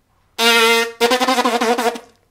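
A brass player's buzzed note, held steady for about half a second, then a fast run of tongued repeated notes, about ten in a second, at a similar pitch that wavers slightly.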